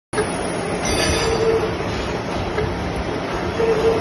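Gear hobbing machine cutting teeth into a large helical gear under flowing cutting oil: a steady machining noise with a squealing whine that comes and goes, strongest about a second in and again near the end.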